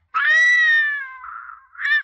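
Newborn baby crying: one long wail that falls slightly in pitch and trails off, then a short second cry near the end.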